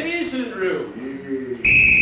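A man's voice, then about one and a half seconds in a single loud, high-pitched police whistle blast starts, a steady tone that dips slightly in pitch.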